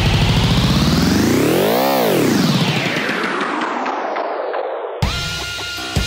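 Electronic background music: a dense synth sweep rises in pitch to a peak about two seconds in, then falls away. About five seconds in it cuts sharply into a new section.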